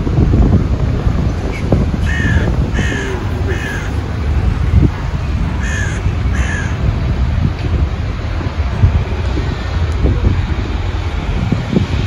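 A crow cawing: three caws in quick succession, then two more a few seconds later, over a steady low rumble.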